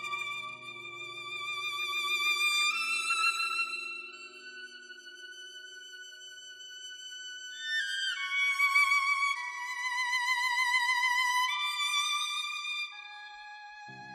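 Violins playing a slow, lyrical melody of long held notes with vibrato, rising in steps over the first few seconds. The music drops quieter around the middle, then a higher violin line comes in about eight seconds in.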